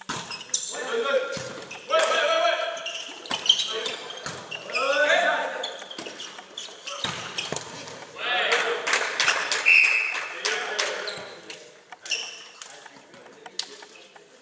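A volleyball rally: the ball is struck and slapped several times, with players shouting calls to each other, echoing in a large sports hall.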